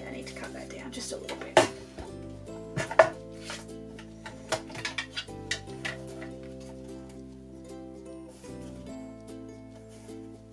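Background music with a few sharp clacks and taps from a paper trimmer being handled and paper being set against it. The two loudest clacks come about one and a half and three seconds in, and lighter taps follow over the next few seconds.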